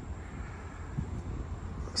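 Quiet outdoor background between spoken phrases: a steady low rumble with a faint hiss above it.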